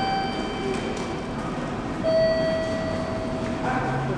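Electronic chime tones in a station concourse. A higher tone sounds at the start, a lower tone is held for about a second and a half from two seconds in, and the higher tone returns near the end, over a steady hubbub.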